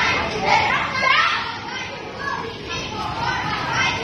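Many children's voices talking and calling out at once, overlapping into a steady chatter.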